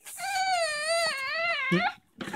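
An upset infant crying in one long, wavering wail that rises and falls in pitch and breaks off just before the end.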